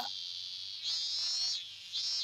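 Cicadas singing in a high, buzzing drone that comes in repeated phrases: one swells in just under a second in and lasts under a second, and another begins near the end. A hot summer-day sound.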